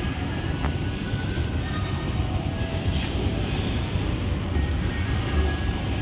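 Escalator running with a steady low rumble amid mall background noise, with a couple of faint clicks.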